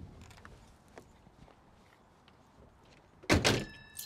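A few faint clicks, then one loud thunk of the 1962 Ford Galaxie 500's steel car door shutting a little over three seconds in, followed by a brief metallic ringing.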